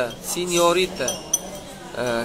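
A man's voice speaking briefly, then a pause, with one short sharp click a little past the middle.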